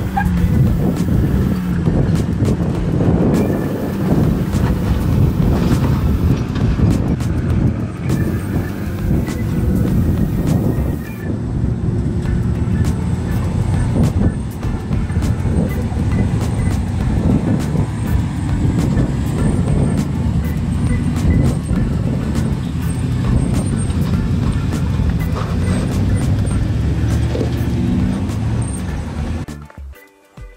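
Lifted off-road trucks' engines running and revving under load as they crawl over sandstone slickrock, with frequent sharp knocks. The sound drops away just before the end.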